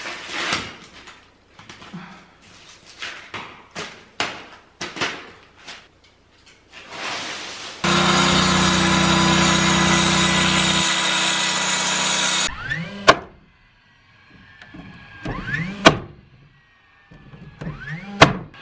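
Utility knife slicing through plastic house wrap on a concrete floor, with the sheet crinkling and rustling. Then a circular saw cuts through a sheet of plywood for about four and a half seconds, followed by two loud, sharp bangs a few seconds apart, probably nail-gun shots fastening plywood.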